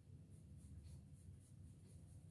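Faint scratching of an HB graphite pencil shading on sketchbook paper, in short strokes about four a second, over a low steady hum.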